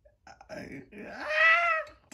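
A high-pitched, drawn-out wailing call, rising and then falling in pitch, loudest about one and a half seconds in, after a few faint clicks.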